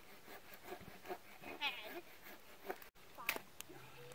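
Faint crackling and ticking of a small backyard campfire. A brief high, wavering call comes about one and a half seconds in, and a couple of sharp cracks follow near the end.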